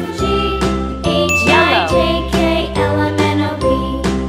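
Background music: a light, jingly tune with bell-like notes over a steady beat, with a quick falling run of notes about a second and a half in.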